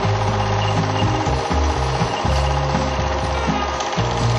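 Film projector running, its mechanism clattering steadily, over music with a low bass line that steps from note to note.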